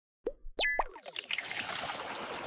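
Cartoon-style transition sound effect: a few quick bubbly plops with short pitch glides, then a soft, steady hissing wash.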